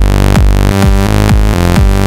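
Harmor software synthesizer playing a looping bassline: repeated buzzy notes about twice a second, each starting with a quick downward pitch drop. Its Harmonizer width is being turned up, which adds octave-up harmonics to the tone.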